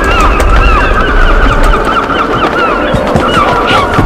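A flock of large birds calling all at once: many short calls in quick succession, each rising then falling in pitch, over a steady low rumble.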